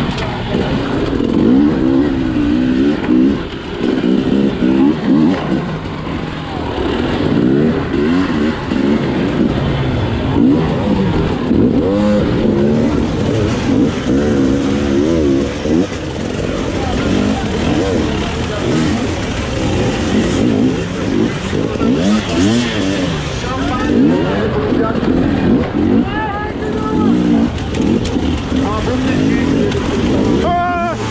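Two-stroke enduro motorcycle engine under constant throttle work, its revs surging and dropping every second or so as it claws up a rocky climb.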